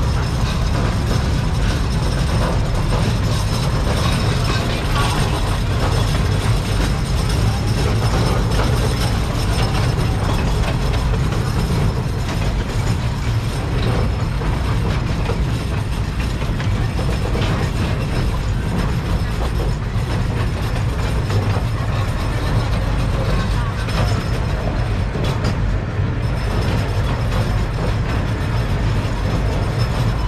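Miniature ride-on passenger train rolling along its track, heard from aboard: a steady rumble with dense clattering and rattling of wheels and cars.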